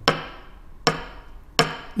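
Three sharp knocks of a hand striking the wooden lecture desk, each with a brief ringing tail, a bit under a second apart. The knocks are a Seon teacher's direct pointing: "this is the Dharma".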